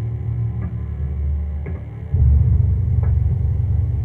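Film soundtrack played through a TV: a deep, rumbling low drone of score with faint soft taps about once a second. The drone swells louder about halfway through.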